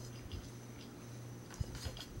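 A few faint clicks and taps from an airsoft rifle being handled, mostly in the second half, over a low steady hum.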